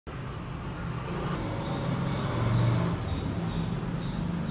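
A steady low motor hum that swells about two and a half seconds in and then eases off, with faint high chirps repeating.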